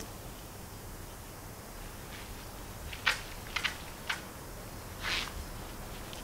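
Hardware cloth wire mesh clicking and scraping as it is handled and bent over a wooden block: a few sharp clicks about halfway through, then a short scraping rustle near the end.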